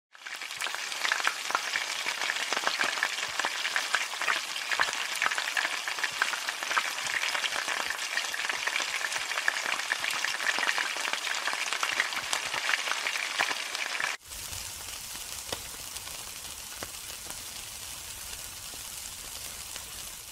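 Food frying in hot oil, sizzling with dense crackles and pops. A sudden cut about 14 seconds in drops it to a quieter, steadier sizzle with a low rumble underneath.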